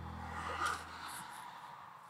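Quiet car-cabin background: a low steady hum fades away within the first second, with a faint rustle or breath of someone shifting in the seat about half a second in.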